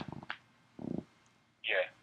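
Voices over a telephone conference line: a man's words trailing off, a brief low voice sound about a second in, and a caller starting to speak near the end.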